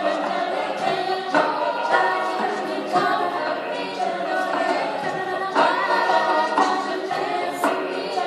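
Mixed-voice a cappella group singing a pop song arrangement in layered harmony, voices only, with no instruments.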